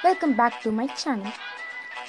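A high-pitched, cartoon-like voice with wide, fast swoops in pitch over background music.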